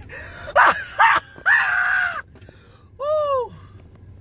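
A man laughing hysterically in high-pitched shrieks: a couple of short yelps, a long held squeal, then one rising-and-falling whoop about three seconds in.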